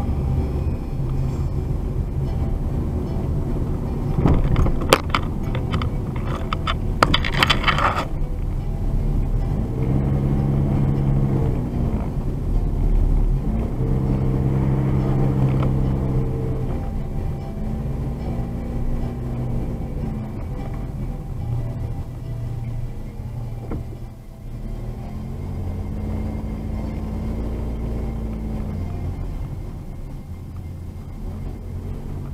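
Car driving slowly, heard from inside the cabin: a steady low engine and road rumble, with a low engine hum that swells and settles several times. Background music fades out in the first few seconds, and a few sharp knocks or rattles come between about four and eight seconds in.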